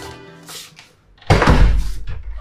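Background music fades out, then about a second in comes a single heavy thud of a door being shut hard, with a low boom that dies away over about a second.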